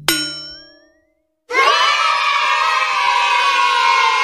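A bright ding sound effect rings and fades away over about a second. After a short silence, a crowd of children cheers and shouts, loud and steady, as a correct-answer reward sound.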